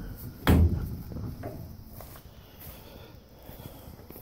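A single heavy thump on the horse trailer's body about half a second in, ringing briefly, followed by faint scuffing and small knocks.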